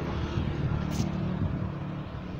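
1998 Toyota Land Cruiser Prado TX engine idling steadily, a low even drone, with one brief click about a second in.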